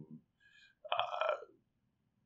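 A man's brief voiced hesitation sound, a short croaky 'uhh' about a second in, between otherwise quiet moments.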